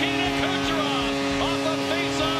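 Arena goal horn sounding one long, steady note after a goal.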